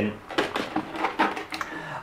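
A few light clicks and taps from hands handling the plastic body shell and parts of an RC car.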